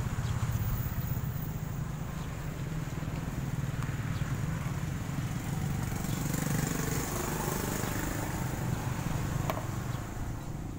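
A steady low engine drone, swelling a little about six or seven seconds in, with a faint click near the end.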